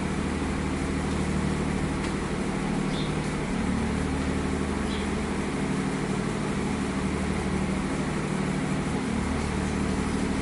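Steady low machine hum with an even hiss underneath, unchanging throughout.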